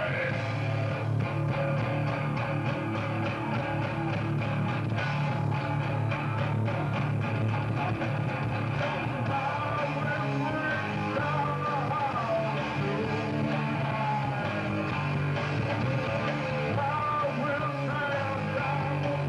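Hardcore punk band playing live, with electric guitar, bass and drums under a vocalist singing into a microphone; the sound is loud and steady with no breaks.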